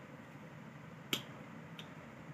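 Plastic flip-top cap of an aloe vera gel tube snapping shut with one sharp click about a second in, then a fainter click shortly after.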